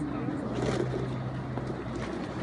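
Room tone of a large sports hall: a steady low hum under a faint haze of noise, with faint voices of onlookers.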